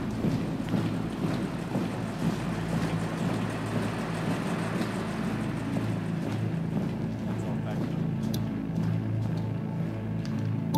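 Steady low rumbling noise from a documentary film's soundtrack, with a few faint clicks near the end.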